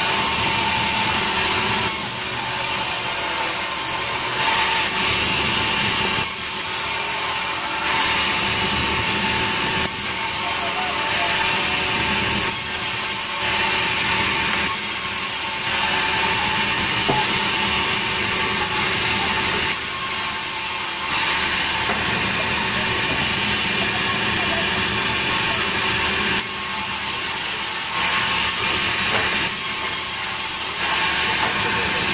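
Sawmill band saw running and cutting through a very hard berangan (chestnut) log, a steady machine noise with a constant tone, its level shifting every few seconds as the cut goes on.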